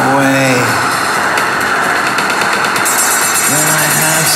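Electronic synthpop from iPad synth apps: a held, buzzy synth tone gives way about a second in to a dense, noisy texture, and pitched synth tones come back near the end.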